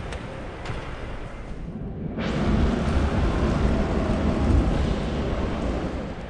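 Wind rushing over a handheld action camera's microphone as the camera moves quickly. It starts abruptly about two seconds in as a loud, steady rumbling rush that lasts to the end.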